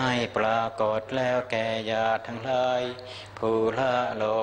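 Thai Buddhist monks chanting Pali together in a steady, near-level recitation, the syllables held and broken at an even pace.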